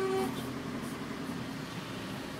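Steady running noise of a moving vehicle: an even rumble with faint steady tones over it, after a brief voice-like sound at the very start.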